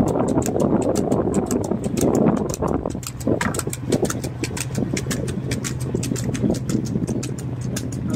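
A motorcycle engine running at a steady speed with wind and road rush, over a fast, even ticking.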